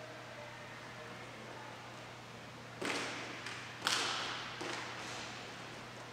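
Roller hockey play: sharp knocks of stick and puck, a first one about three seconds in and a louder one about a second later, each ringing on in the large hall, over a steady low hum.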